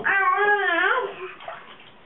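A baby's vocal sound, one drawn-out wavering cry about a second long, high in pitch, then fading to quiet bath noise.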